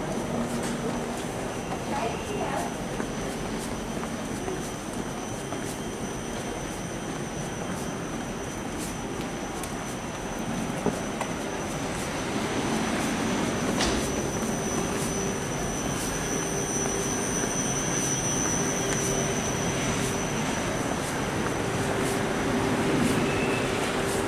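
Railway platform ambience beside a standing Nightjet sleeper train: a steady high-pitched whine and a lower on-and-off hum from the coaches, with scattered light clicks and a murmur of voices.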